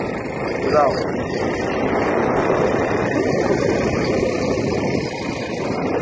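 Steady rush of wind buffeting the phone's microphone, with road noise, from riding on a moving motor scooter.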